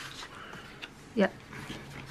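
Stiff painted paper swatch strips being handled and laid down on a table, giving a faint rustle. About a second in comes one short rising whimper-like squeak, the loudest sound.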